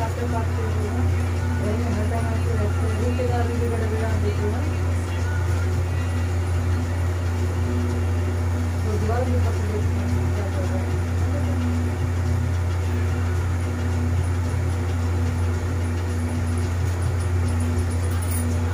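Steady low hum with no change in level, under faint talk from people in the room in the first few seconds and again about nine seconds in.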